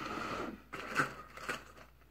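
Objects being handled and moved on a table: rustling, then a few short clicks and knocks.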